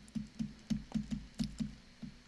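Stylus tapping and knocking on a pen tablet while handwriting: about nine short, dull, irregular knocks.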